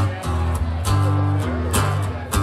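Solo acoustic guitar played live: chords strummed with several sharp, bright accented strokes over deep bass notes that ring on.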